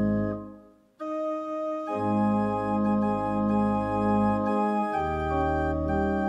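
Organ playing a hymn in held chords. A chord is released just after the start and fades to a brief silence; a new phrase begins about a second in, with the bass coming back about two seconds in, and the chords then change every second or so.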